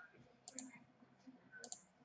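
Near silence with a few faint clicks, a pair about half a second in and a few more near the end.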